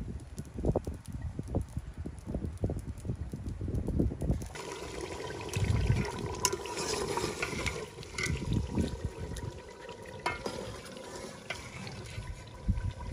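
A low, irregular rumble for the first few seconds, then a pot of curry bubbling and sizzling on the fire as a steel ladle stirs through it, with light scrapes and clicks.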